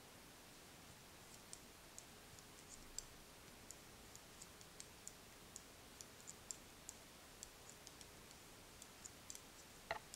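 Knitting needles clicking faintly as stitches are knitted at a steady pace, light irregular ticks a few times a second over a quiet room.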